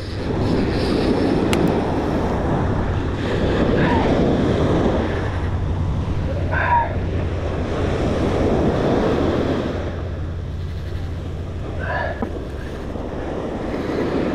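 Wind buffeting the microphone over surf washing onto the beach, a steady rushing noise. Three short, faint rising chirps come through it, about four, seven and twelve seconds in.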